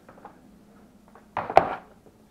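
A plastic ECU box lid set down on a metal workbench top: faint handling noise, then about one and a half seconds in a short clatter with one sharp knock.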